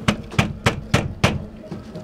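A hand knocking about five times in quick succession on a slatted thermal roller shutter, testing how solid its slats are.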